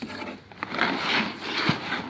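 Brown packing paper rustling and cardboard rubbing as a new exhaust silencer is shifted in its box, with a small knock near the end.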